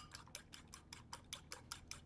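Eggs being beaten with a fork in a ceramic bowl: the fork clicks against the bowl about five times a second in a quick, even rhythm, faintly.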